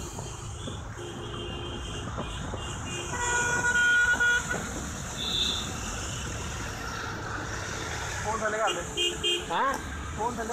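Steady wind and traffic noise on a moving motorcycle in city traffic, with a vehicle horn sounding for over a second around the middle.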